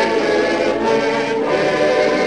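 Many voices singing a gospel song together in a live recording, holding chords that change about one and a half seconds in.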